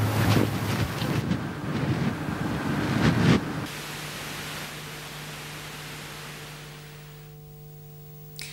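Gusty wind rumbling on an outdoor microphone, dropping suddenly about three and a half seconds in to a quieter steady hiss that fades away.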